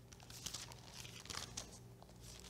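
Thin Bible pages being leafed through by hand: faint papery rustles, a few short turns about half a second in and again past the middle, while the reader looks for a passage.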